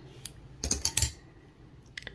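A handful of sharp plastic clicks from a clear plastic CDC feather clamp being handled and pulled away as the fibres are set into a dubbing loop. There is one click, then a quick bunch of clicks around the middle.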